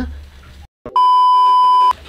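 A single steady electronic beep, one pure high tone held for about a second, starting abruptly about a second in and cutting off sharply. It is an edited-in bleep tone, preceded by a moment of dead silence.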